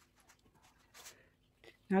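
Faint soft scrape of a paddle brush against canvas coated in wet fluid acrylic paint, about a second in, followed by a woman starting to speak at the very end.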